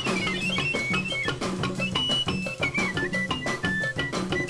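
Background music: a stepping melody over a steady bass line and an even drum and percussion beat.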